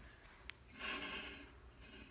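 Faint handling noise: a light click, then a brief rubbing scrape lasting under a second, as the phone is swung over to the soda cans.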